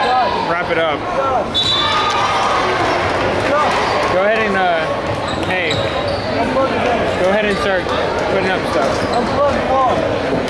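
Sounds of a basketball game in a gym: many voices of spectators and players shouting and talking over one another, with a basketball bouncing on the hardwood court.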